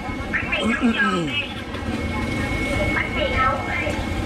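Market-street ambience: people's voices talking in two short stretches over a low rumble of traffic, with a thin steady high whine underneath.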